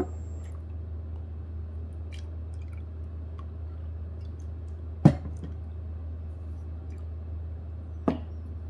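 Soju poured from a bottle into a small shot glass, over a steady low hum. A single sharp knock about five seconds in is the loudest sound.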